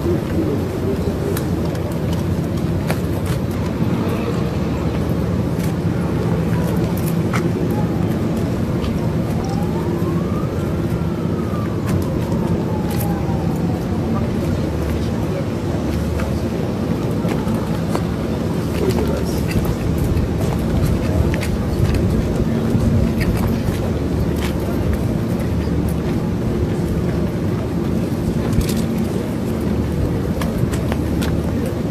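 Jet engines of a U.S. Air Force C-17 Globemaster III, four turbofans, running as the aircraft taxis: a steady low rumble with a hum. A faint rising-then-falling whistle-like tone comes through about ten seconds in.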